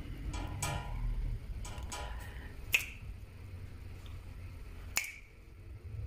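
Two sharp finger snaps, the first about three seconds in and the second about two seconds later, each with a short ringing tail.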